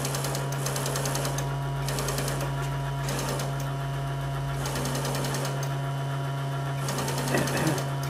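Small brushed DC electric motor running steadily on jumper leads from a Power Probe III, giving an even hum with a fast, fine chatter over it.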